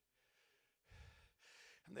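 Near silence with two faint breaths drawn into a handheld microphone by a man pausing in his speech, one about a second in and another just after.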